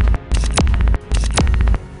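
Electronic promo sound effect: deep bass throbs repeating about every 0.8 s, each ending in a sharp falling electronic sweep.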